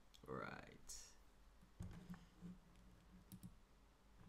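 Near silence with a few faint clicks and a brief, low murmur of a voice.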